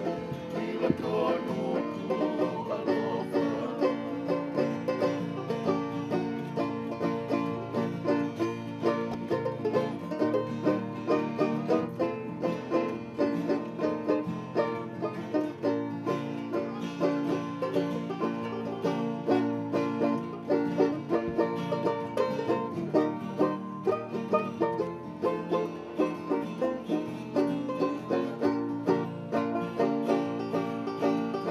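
String band music: acoustic guitars and other plucked strings strummed in a quick, even rhythm.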